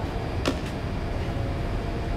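Steady low room rumble, with a single light click about half a second in as items are handled inside a backpack.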